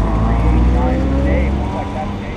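Porsche 981 Cayman S flat-six engine running at low revs as the car rolls slowly, its pitch drifting gently, with a heavy low rumble on the side-mounted camera that eases near the end.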